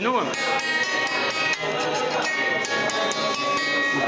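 Small cymbalum, a box zither, with its metal strings struck by a stick: a run of about eight separate notes at different pitches, each ringing on, that sound a bit like a piano.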